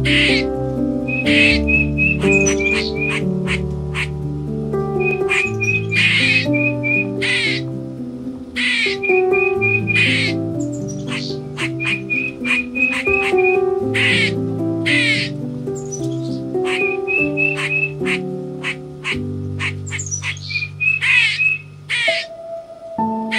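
Background music of sustained held notes, mixed with bird calls: runs of short high chirps and many short, sharp calls repeating throughout.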